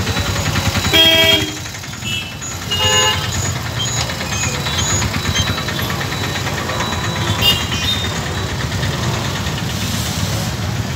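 Busy street traffic: motorbike, scooter and car engines running, with a vehicle horn honking briefly about a second in and again near three seconds.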